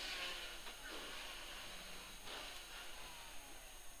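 Faint in-cabin noise of a 1440cc 16-valve rally Mini running on a wet stage: a muffled engine under a steady hiss of tyres on wet tarmac.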